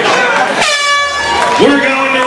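An air horn blows once for just under a second, the signal that round one is over, over shouting voices from the crowd and corner.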